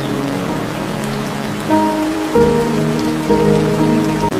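Steady rain falling on water and grass, with soft held music chords coming in under it a little under two seconds in.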